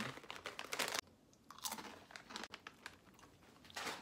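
Someone biting and crunching a crisp seaweed snack close to the microphone. The crunching is densest in the first second and cuts off sharply, then comes back as sparser chewing crunches with a short burst near the end.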